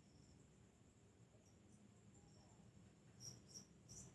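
Near silence, with a faint high-pitched chirping that comes in about three seconds in and repeats a few times a second.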